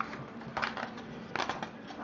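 Sheets of paper rustling twice, briefly, about a second apart, as they are lifted and separated from a pad.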